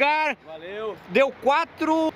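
Speech only: a person talking in short bursts, with no other sound standing out.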